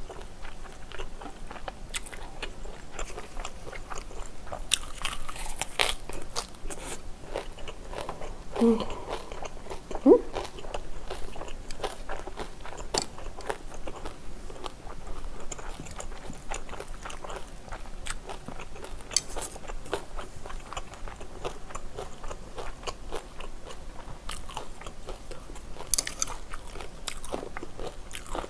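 Close-miked eating: steady chewing and crunching of spicy stir-fried squid and pork belly with glass noodles and raw green pepper, full of small wet mouth clicks. A couple of brief hums come about a third of the way in.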